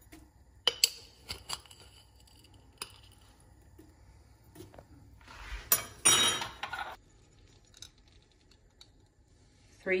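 A metal spoon clinking and tapping against the rim of a stainless steel pot several times as brown sugar is knocked off it. About six seconds in comes a louder metallic clatter with a brief ringing.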